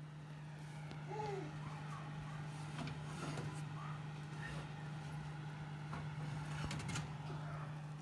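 Electric oven's convection fan running with the door open: a steady hum, with a few light clicks and knocks.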